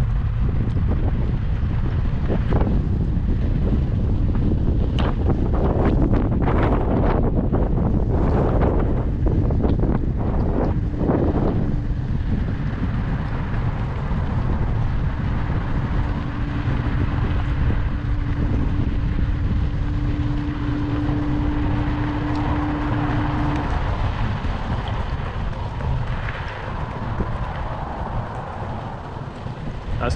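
Strong wind buffeting a microphone carried on a moving electric scooter, a heavy steady rumble throughout. Scattered knocks come in the first dozen seconds, and a steady electric-motor hum sounds for about twelve seconds in the middle.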